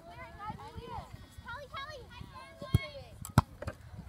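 Voices calling across an outdoor soccer field, with two sharp knocks a little over half a second apart near the end, louder than the voices.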